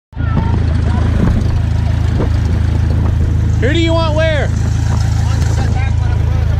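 A steady low engine drone with a fine, even flutter, and a voice calling out briefly about halfway through.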